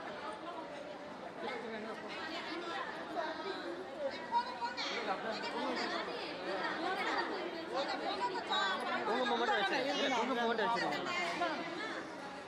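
A group of people chattering at once, with many overlapping voices. The talk grows a little louder in the second half.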